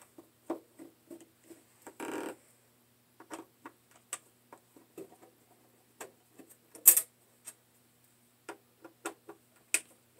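Screwdriver working the screws of a car amplifier's metal panel: irregular small metallic clicks and ticks, a short scrape about two seconds in, and a sharper click near seven seconds.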